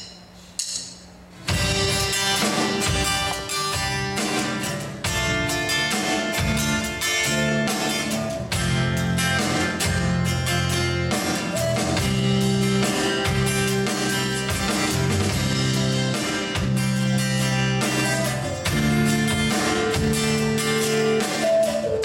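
Live acoustic guitar and band playing the instrumental opening of a song, with drums keeping a steady rhythm. The music starts about a second and a half in, after a short quiet.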